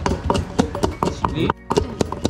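Wooden pestle pounding in a large clay mortar: repeated knocks, with voices over them and a brief break about three quarters of the way through.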